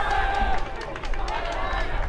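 Voices calling out on and beside an outdoor football field: a burst of talk at the start, a brief lull about a second in, then more voices, over a steady low rumble.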